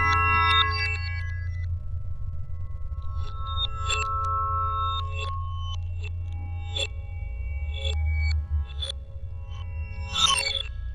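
Electroacoustic music built from recorded and manipulated wind chimes: struck metallic chime tones ring on over a steady low hum. The earlier tones die away in the first two seconds, and fresh strikes come about once or twice a second from about three seconds in.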